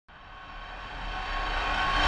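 Swelling intro sound effect for an animated production logo: a noisy rising whoosh with a few held tones in it, growing steadily louder throughout.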